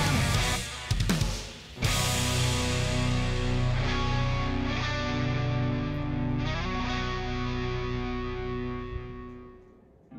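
Closing bars of a Japanese hard rock band's recording: drums and electric guitars play, break off about half a second in with a single hit, then a final chord is held over a pulsing bass line and fades out near the end as the song finishes.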